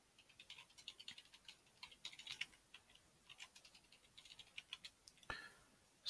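Faint typing on a computer keyboard: irregular runs of soft key clicks, with a brief louder sound shortly before the end.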